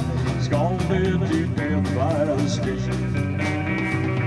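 Live country band playing an instrumental break: electric guitar lead lines with bending notes over bass and a steady beat.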